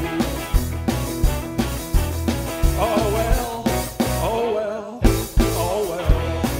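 Live blues-rock band playing: electric guitar, bass guitar, keyboard and drums driving a steady beat with bending guitar lines. The band stops briefly just before five seconds in, then comes back in.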